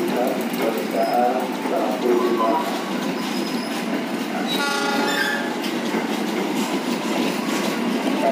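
Cirebon Ekspres passenger train's carriages rolling past the platform, a steady rumble of wheels on the rails, with a short horn-like tone sounding about halfway through.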